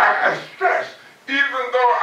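Speech only: a man preaching in loud, short phrases.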